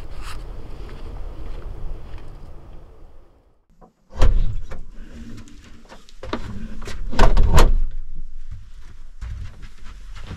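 A person climbing into a small camper trailer: a string of knocks and thumps from the door and footsteps on the floor, the loudest a close pair about seven seconds in. Before that there is a low steady rumble, broken off by a moment of silence.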